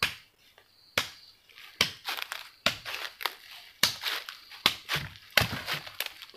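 Dry bamboo leaf litter crunching under a series of sharp strikes, roughly one a second.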